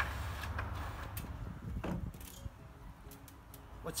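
A low rumble that dies away after about two seconds, with a few sharp knocks and clicks scattered through it.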